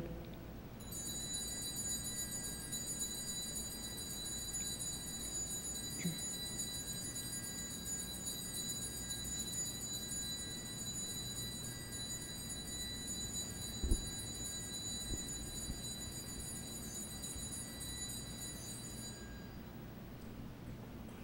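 A steady high-pitched electronic whine made of several held tones, over a faint low hum, with one short thump about fourteen seconds in.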